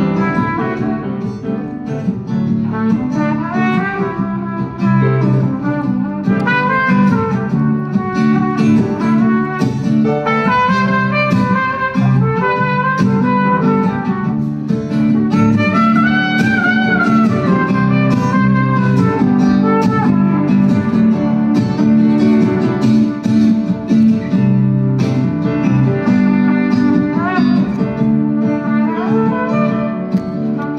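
Trumpet and acoustic guitar playing jazz live: a trumpet melody with gliding, held notes over steady acoustic guitar chords.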